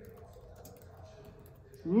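Faint, irregular clicks of typing on a keyboard, over a low steady hum.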